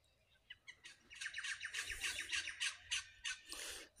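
A bird calling in a quick run of short, high notes, about six a second, starting about a second in and lasting a couple of seconds.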